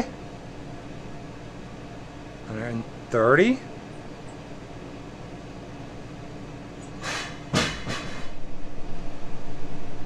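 Steady low electric hum of the Blackstone air fryer's fan running. About seven seconds in, a few short loud rushing sounds, then a rougher, fluctuating noise that keeps up to the end.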